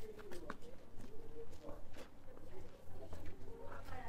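A pigeon cooing, with scattered footsteps on stone paving.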